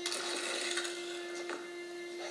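Soundtrack of a TV episode playing in a small room: a single steady held note with a hiss over it, and a short click about one and a half seconds in.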